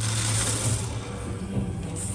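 Candy-coated chocolates pouring from a gravity bin dispenser into a plastic bag, a rattling rush for about the first second that then thins out. Background music plays underneath.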